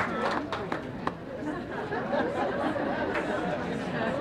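Crowd chatter: many voices talking at once with no single speaker standing out. A few sharp clicks come in the first second and one more about three seconds in.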